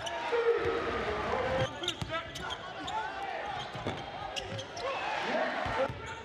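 Live basketball game sound in a gym: a ball dribbling on the hardwood, with players and fans shouting over one another and a long shout near the start.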